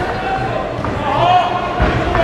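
Dull thuds of a Muay Thai bout, strikes and footwork on the ring, with voices calling out, all echoing in a large hall; the strongest thud comes near the end.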